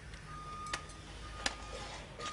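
Two sharp clicks about three-quarters of a second apart as the legs of a surveyor's tripod are handled and raised, over a low steady hum and a faint high tone that comes and goes.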